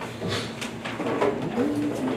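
Low voices and a few light knocks and rustles in a room as an audience gets to its feet, with a short low hummed voice sound near the end.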